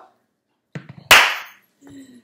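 Dead silence, then a single sharp smack about a second in that dies away over half a second.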